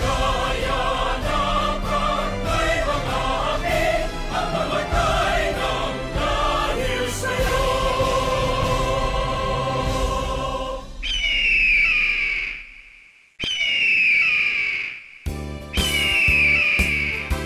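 Choral music with accompaniment ends on a long held chord about eleven seconds in. Then a raptor's high scream, falling in pitch, sounds three times with short silent gaps between.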